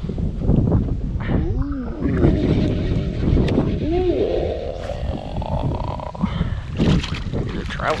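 Wind buffeting the microphone with a steady low rumble, broken by a few short wordless vocal sounds. Near the end a hooked speckled trout splashes at the surface.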